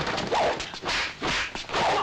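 Kung fu fight sound effects: a rapid series of whip-like swishes and slaps from blows and a swung staff, several in quick succession.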